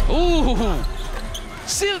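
Live basketball game sound from the court: a basketball bouncing on the hardwood, with short rising-and-falling pitched sounds in the first second.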